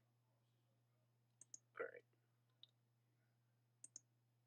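Computer mouse clicking: a quick pair of clicks about a second and a half in, a single softer click later, and another quick pair near the end, over a faint low hum. A brief vocal sound just before the two-second mark is the loudest thing.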